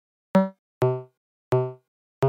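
Three short plucked synthesizer notes of a trap beat's melody, each with a sharp attack and a quick decay into silence, with no drums underneath. The first note is higher than the other two.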